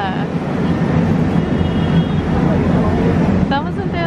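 Busy city-square ambience: a steady low rumble of traffic and crowd, with the chatter of passers-by and a voice rising out of it near the end.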